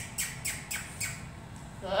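Small bulldog-type dog sniffing and snorting at the floor in a quick run of short sniffs, about three or four a second, which stops about a second in.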